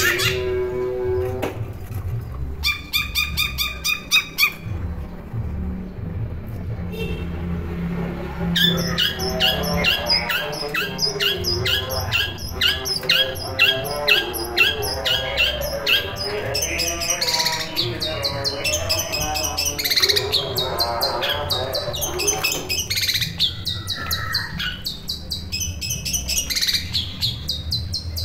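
Caged long-tailed shrike (cendet) in full song: loud runs of rapid, harsh chattering notes, broken by short pauses and varied calls.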